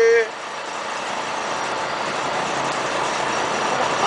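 A fishing boat's engine running steadily, heard as an even rushing hiss with no clear beat or tone. A man's drawn-out voice trails off at the very start.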